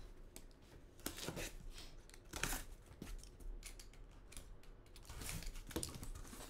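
Packing tape being cut and slit open on a cardboard shipping case: a few short scraping strokes, with the rustle of the box being handled.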